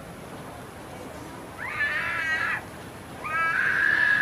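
Male qari reciting the Qur'an (tilawah) in a high register: after a pause, two short melismatic phrases with wavering, ornamented pitch, the first about one and a half seconds in and the second about three seconds in.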